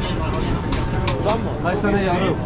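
Busy street din: other people's voices talking over a steady low rumble of traffic, with a few short clicks.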